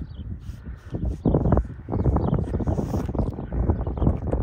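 Wind buffeting the microphone in an uneven low rumble, with the scuffing of footsteps on a paved road.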